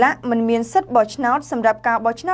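Speech only: a woman reading the news aloud in Khmer at a steady pace.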